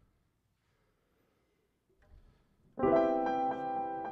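Near silence for nearly three seconds, then an acoustic piano starts playing: a loud chord that rings on, with a few more notes struck over it.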